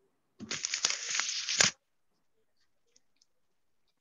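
A single burst of rustling, crinkling noise, about a second long, picked up by a video-call microphone.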